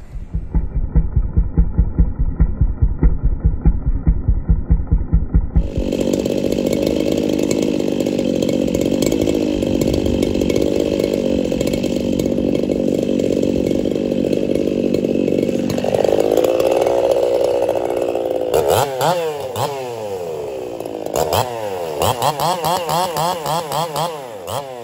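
Brisco-built Echo CS-4910 two-stroke chainsaw running at a steady speed, then revving up about two-thirds of the way through. In the last few seconds it cuts into a log, the engine pitch swinging up and down under load. The first five seconds hold a muffled sound that pulses evenly, several times a second.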